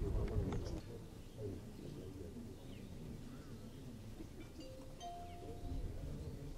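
Low outdoor rumble and murmur, loudest in the first second, with a few short high bird chirps and a brief held tone near the end.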